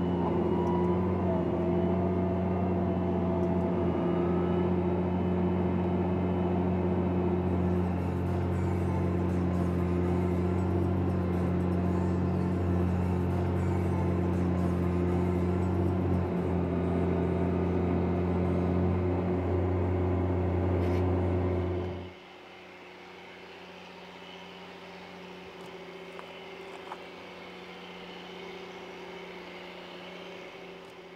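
Challenger MT765B tracked tractor's diesel engine running steadily under load while pulling an eight-furrow plough, a loud even drone. About two-thirds of the way through the sound drops suddenly, and the tractor is heard much fainter from afar.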